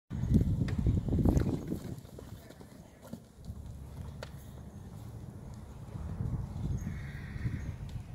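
Hoofbeats of horses cantering and trotting over turf and sand, loudest in the first two seconds.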